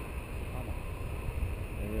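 Airflow in flight buffeting an action camera's microphone on a tandem paraglider: a steady, fluttering low rumble.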